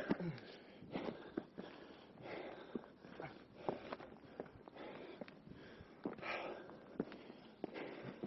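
A hiker's footsteps and scuffs on granite boulders, with short clicks and scrapes, and heavy breathing roughly every two seconds while scrambling over the rocks.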